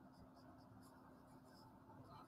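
Very faint scratching of a felt-tip marker writing on paper, in short light strokes against near-silent room tone with a faint steady hum.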